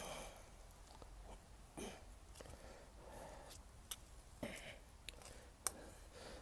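Faint scrapes and crunches of loose garden soil being pushed back over a small hole, with a few sharp clicks near the end.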